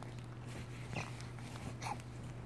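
Two-month-old baby making two brief soft vocal sounds, about a second in and near the end, over a steady low hum.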